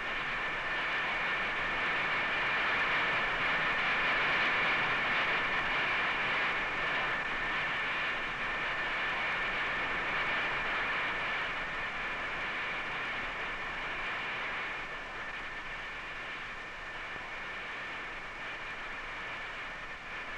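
Compressed air rushing steadily from the tip jets of a hose-fed cruciform hovering test model, with a steady high whine over it. The sound slowly gets quieter through the second half.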